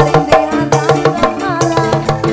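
Live dangdut band music played loud through a stage sound system, driven by a quick, regular beat of hand drums under a keyboard-led melody with sliding, ornamented lines.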